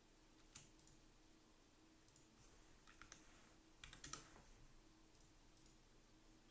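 Faint, scattered clicks of a computer keyboard and mouse, a handful spread through the few seconds with a small cluster about four seconds in, over near-silent room tone.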